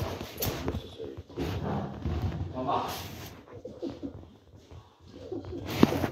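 Indistinct, low voices talking, with a few sharp clicks and knocks, the loudest near the end.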